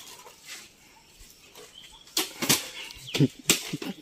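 Plastic water bottles swung and striking, giving a run of sharp hollow thwacks and crinkles from about halfway through.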